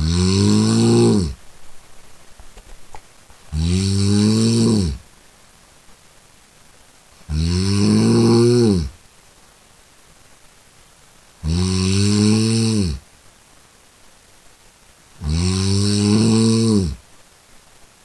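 A person snoring: five loud snores about every four seconds, each lasting about a second and a half, with quieter gaps between them.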